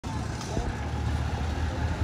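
Low, steady rumble of vehicles on a city street, with faint voices in the background.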